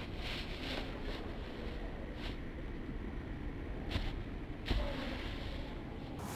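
Steady low outdoor rumble with a few brief soft thumps, the heaviest about five seconds in.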